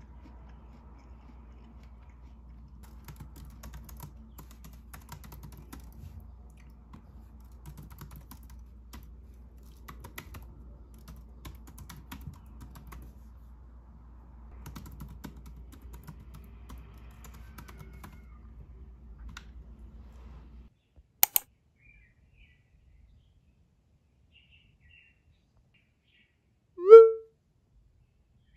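Typing on a laptop keyboard: irregular runs of quiet key clicks over a steady low hum. The typing stops about 21 seconds in, followed at once by two sharp, loud clicks, then near silence with a few faint high chirps.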